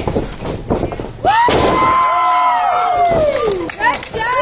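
A wrestler slammed down onto the wrestling ring with a sudden loud impact about a second in. It is followed by long, drawn-out vocal shouts of 'ohhh' that fall in pitch and trail off near the end.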